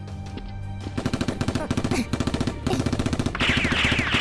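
Rapid automatic gunfire, a machine-gun sound effect, breaking out about a second in over a music bed, with falling whistling tones near the end.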